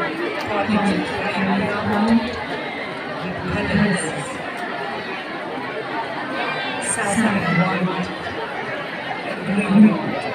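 Crowd of spectators chattering, many voices talking over one another, with a few nearer voices standing out now and then.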